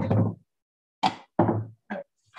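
A few knocks of the wooden-framed painting board bumping on the table top as it is turned and repositioned, four separate thumps with a sharp start and quick fade.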